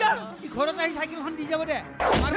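A man's voice crying out in pain, in wavering, wordless cries, over a faint high hiss in the first half.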